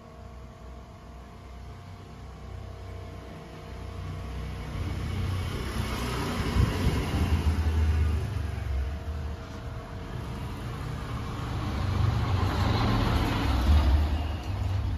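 Street traffic: motor vehicles going by, a low rumble and hiss that builds about five seconds in and swells again near the end.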